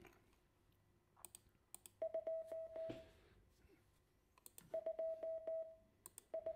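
Computer-generated Morse code tone sending the digit 2 (di-di-dah-dah-dah), a steady single beep-tone played twice, each about a second long, starting about two seconds in and again near the end. A couple of faint clicks come just before the first one.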